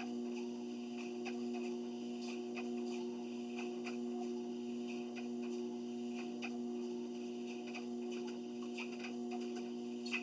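Electric treadmill running with a steady motor hum while someone walks on it, with faint irregular ticks over the hum.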